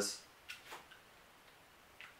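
A couple of faint, short clicks of injection-molded plastic Nerf muzzle-attachment pieces being handled and fitted together.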